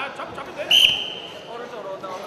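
A referee's whistle blown once, a steady high tone of just under a second starting about two-thirds of a second in, over voices calling out in the hall.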